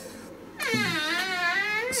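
Door squeaking as it is pulled open: one long squeal with a wavering pitch, starting about half a second in. It is a squeak this door always makes.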